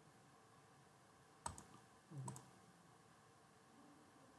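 Near silence broken by two quick, sharp computer mouse clicks about a second and a half in, then a fainter, softer sound just after.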